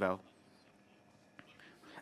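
A man's speech trails off at the start, followed by a pause of near-silent room tone.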